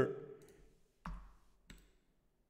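A few quiet computer mouse clicks: a soft thump about a second in and a short, sharp click near the end, as a right-click opens a desktop menu.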